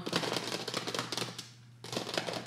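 Crinkling of a plastic food packet being handled: a rapid run of small irregular crackles that dies down briefly and picks up again near the end.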